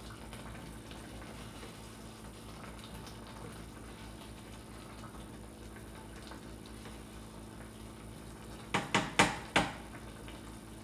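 A spatula knocked four times in quick succession against a small stainless steel pot, giving sharp metallic clanks near the end. Beneath it is a faint steady background hum.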